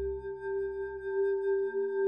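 Background music: an ambient pad of sustained, ringing held tones, with a deep bass drone fading away at the start.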